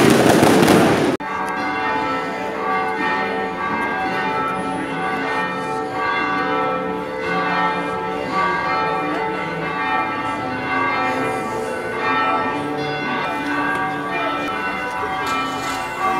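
Fireworks crackling and banging for about the first second. After an abrupt cut, church bells ring on steadily with many overlapping tones.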